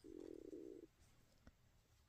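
Near silence, with a brief faint low hum lasting under a second at the start.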